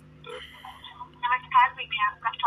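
A voice speaking through a mobile phone's loudspeaker during a call, with the thin, narrow sound of telephone audio. It starts faintly and grows much louder from about a second in, as the customer care executive comes on the line after the transfer.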